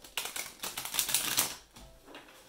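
A deck of tarot cards being shuffled by hand: a rapid run of card-edge clicks lasting about a second and a half, then stopping.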